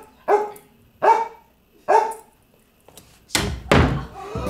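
A dog barks three short times, about one bark every 0.8 s. Two heavy thumps follow near the end.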